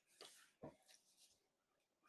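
Near silence, with two faint, brief soft sounds about a quarter and two-thirds of a second in.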